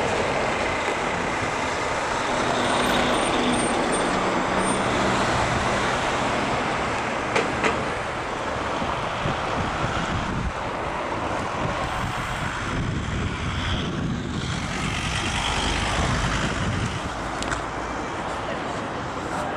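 City street traffic: a steady wash of passing cars and buses with engine hum, and two short clicks close together about seven seconds in.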